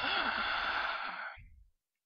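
A man's long, breathy sigh into the microphone, lasting about a second and a half and fading out at the end.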